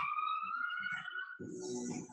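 A siren, heard as a steady high wailing tone sliding slowly down in pitch, fading out about a second and a half in.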